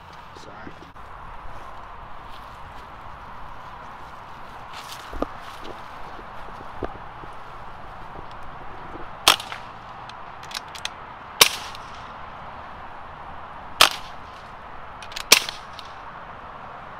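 Air rifle firing four sharp cracks about two seconds apart, starting about nine seconds in.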